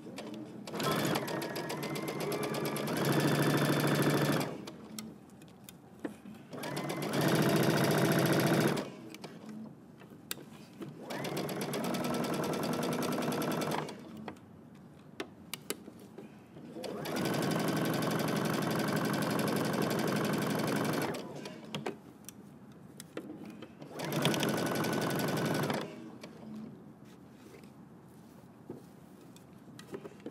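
Domestic electric sewing machine stitching a sleeve seam in knit fabric, in five stop-start runs of two to four seconds each. The first run gets louder and faster about three seconds in. Light clicks and taps fall in the pauses as the fabric is repositioned.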